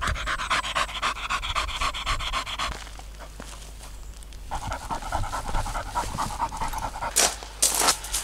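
A dog panting rapidly close to the microphone; the panting drops away about three seconds in and starts again a second and a half later. Two loud short noise bursts come near the end.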